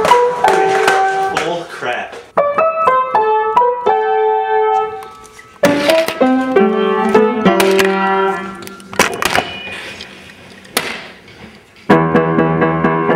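Piano music: phrases of short stepping notes that break off and restart about 2, 5.5 and 9 seconds in, with sharp knocks between the phrases.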